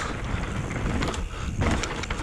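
Mountain bike riding fast down a rocky, gravelly trail: tyres crunching over loose stones, with several sharp knocks and rattles from the bike over bumps. Wind rumbles on the head-mounted camera's microphone.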